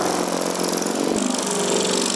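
Electric saw with a serrated blade running as it cuts into rigid foam board, a steady motor sound that shifts slightly in tone about a second in.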